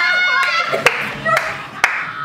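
Four hand claps, about two a second, over loud laughter from a few young women.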